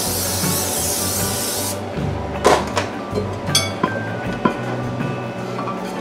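Aerosol non-stick cooking spray hissing steadily into a ceramic baking dish, cutting off a little under two seconds in. It is followed by a few sharp knocks and clinks as the dishes are handled, with background music playing throughout.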